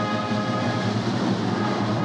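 Ceremonial military band with drums and cymbals, playing a held chord of sustained tones with no separate drum strikes in it.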